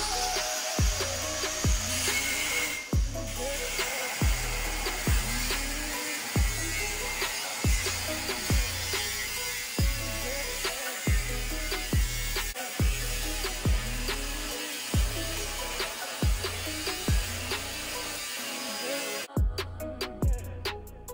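Angle grinder cutting metal, a steady high whine with a short break about three seconds in, stopping shortly before the end, over music with a heavy bass beat.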